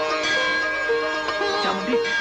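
Indian film background score: a plucked string instrument plays a melody over a steady held drone.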